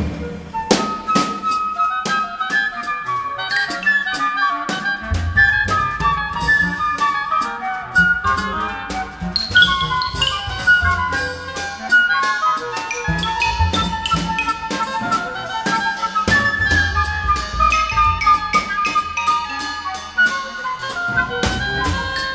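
Progressive big-band jazz orchestra recording: a woodwind melody over steady cymbal and drum strokes, opening on a loud accented hit, with the bass coming in about five seconds in.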